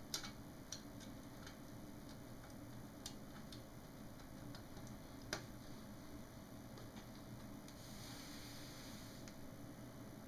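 Faint, irregular clicks and taps from hands handling the LCD monitor's metal shield and connectors, with one sharper click about five seconds in, over low room tone. A soft rustle comes in near the end.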